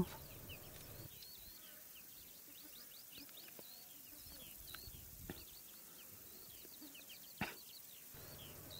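Small birds chirping faintly and steadily in open grassland, many short up-and-down calls overlapping. A brief sharp noise stands out about seven and a half seconds in.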